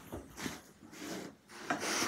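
Paper wrapping on a small gift box rustling and rubbing as it is handled and pulled open, in four or so short scrapes.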